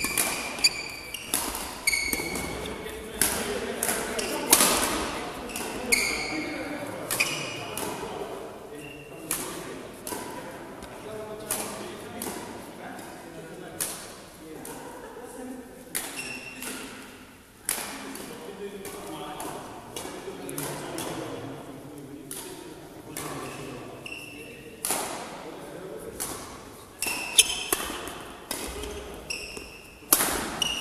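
Badminton play in an echoing sports hall: repeated sharp racket strikes on the shuttlecock and footfalls, with brief high squeaks of court shoes on the floor.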